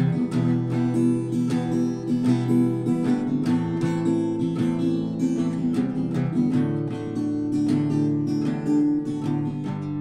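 Acoustic guitar strummed in a steady chord rhythm, with no singing.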